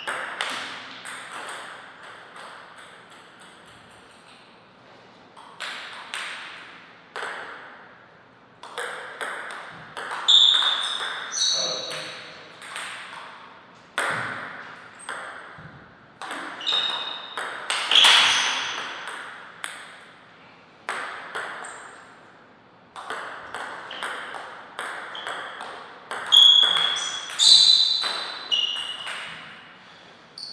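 A table tennis ball being struck by paddles and bouncing on the table in several short rallies: quick runs of sharp pings and clicks, broken by pauses between points.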